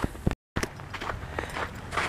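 Footsteps on a thin layer of snow over a paved path, irregular short crunching steps over low background noise. The sound drops out to silence for a moment about half a second in.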